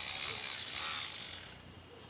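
Wiggle Worm pull-tail vibrating cat toy running: its small motor gives a mechanical buzz that dies away after about a second and a half.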